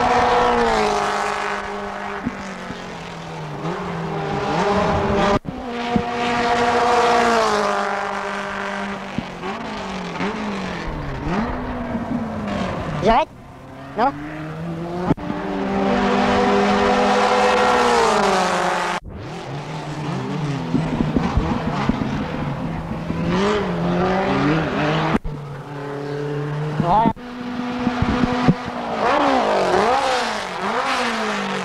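Racing car engines passing one after another, each engine note sliding down in pitch as the car goes by, with a few quick rising revs. The sound breaks off abruptly several times, as at film splices.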